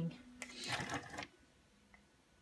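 Horizontal window blinds being worked by hand: a click, then under a second of light rattling and clicking from the slats as they are tilted open. The blinds are sticking and will not open easily.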